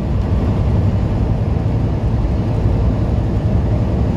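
Steady low rumble inside a semi truck's cab while driving at highway speed: engine drone and road noise, even and unbroken.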